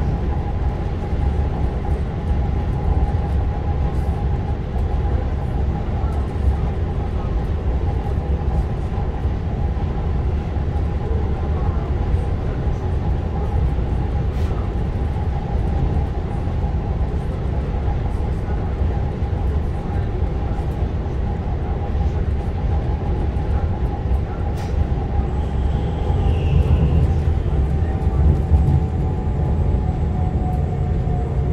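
Inside a Z 20500 double-deck electric multiple unit running at speed: a steady low rumble from the running gear with a steady whine over it. Near the end the rumble grows a little louder and the whine dips slightly in pitch.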